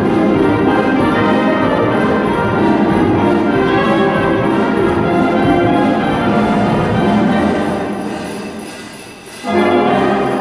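Concert wind band with saxophones, clarinets and brass playing a swing arrangement of Christmas music live. Near the end the band grows softer, then a sudden loud full-band chord comes in.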